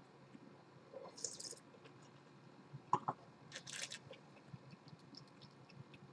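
Faint sipping and slurping of wine from a glass: two short hissy slurps, about a second in and again near four seconds, with small mouth clicks between.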